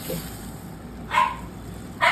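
A dog barks once, a single short, sharp bark just over a second in.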